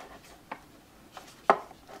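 A few handling clicks and knocks from a folding guitar stand as its parts are moved and folded, with one sharper click about one and a half seconds in.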